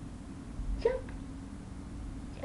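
A toddler gives one short, high vocal squeal about a second in, just after a low thud, over a steady low room hum.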